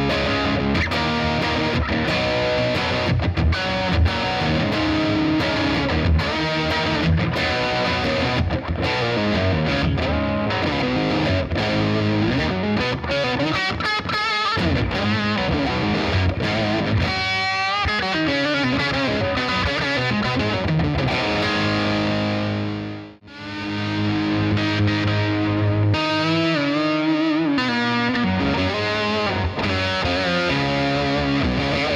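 Distorted electric guitar through a Boss Katana combo amp on a crunch sound with an octave effect, riffing and playing fast runs of notes. The sound drops out for a moment a little past two-thirds of the way through.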